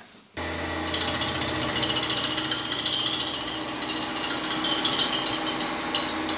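Reel grinder spin-grinding the blades of a mower reel: a steady motor hum, joined about a second in by a loud, fast, high-pitched grinding as the wheel runs along the turning reel blades.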